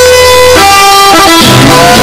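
Chamamé band starting a number: button accordions holding loud sustained chords, the chord changing about half a second in and again around a second and a half.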